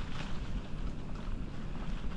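Wind buffeting the microphone of a moving bicycle, a steady low rumble, with the faint crackle of tyres rolling over dry fallen leaves.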